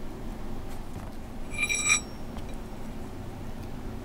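A single light metallic clink that rings briefly about one and a half seconds in, over soft handling noise: small metal parts of the dimple jig being handled as its screws are taken out.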